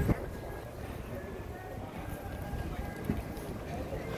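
Busy city street ambience: a steady low rumble of traffic with the indistinct voices of passers-by, and a sharp knock at the very start.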